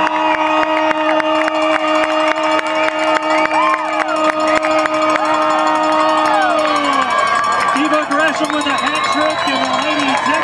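Crowd cheering and screaming in celebration, with a long steady horn blast that drops in pitch and cuts out about seven seconds in.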